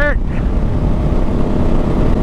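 Yamaha Ténéré 700's parallel-twin engine running at a steady cruise on a dirt road, mixed with steady wind and tyre rumble.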